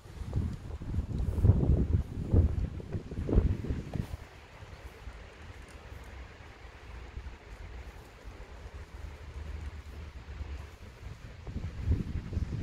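Wind buffeting the microphone: gusty low rumbling for the first few seconds, then a steadier, quieter low rumble.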